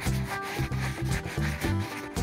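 Felt-tip marker rubbing in quick strokes on paper while colouring in, over background music with a repeating bass line.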